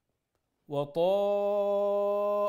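Silent at first, then about two-thirds of a second in a man's voice begins chanted Quranic recitation. From about a second in it holds one long, steady note, a drawn-out vowel.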